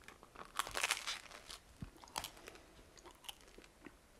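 A person bites into a crusty bread roll with a loud crunch about half a second in, then chews it with smaller, irregular crunches.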